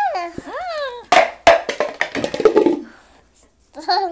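A high voice gives a drawn-out 'ooh', its pitch sliding down, up and down again. Then comes a run of sharp knocks and a rattling clatter from a toy bucket being banged and handled.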